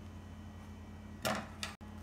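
Quiet hand-sewing: a brief rustle of needle and thread drawn through stretch fabric about a second and a quarter in, over a steady low hum.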